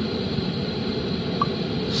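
Steady, even background hiss, like a running fan, with one very short faint tone about one and a half seconds in.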